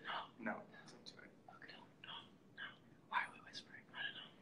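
Quiet, whispered speech in short snatches with pauses between them.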